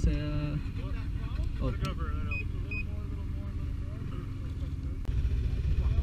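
Snowmobile engines idling with a low, steady rumble. Two short high beeps sound about halfway through.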